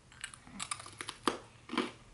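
A crisp white dragon fruit chip being bitten and chewed: a quick run of short, sharp crunches.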